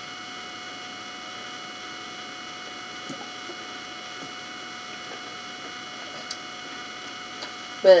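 Steady electrical hum and hiss in the room, with several thin constant tones, and a couple of faint ticks partway through.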